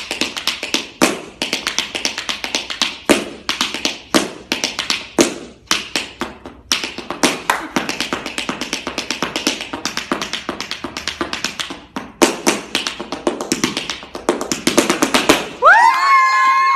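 Tap shoes striking a wooden floor in fast, dense rhythms, with short breaks between phrases. Right at the end a voice lets out a rising cheer.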